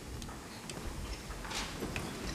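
Many people sitting down in office chairs at once: scattered light knocks and clicks from chairs and desks, with a short rustle about one and a half seconds in.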